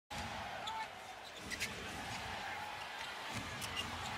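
Arena crowd noise during live basketball play, with a few bounces of the ball on the hardwood court and short sneaker squeaks.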